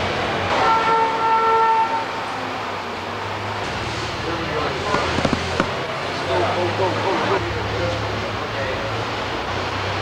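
A horn sounds once, a steady pitched tone of about a second and a half near the start, over steady industrial background noise and low hum.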